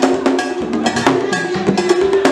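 Haitian Vodou ceremony percussion for dancing: sharp struck beats at a steady pace of about four a second over drums.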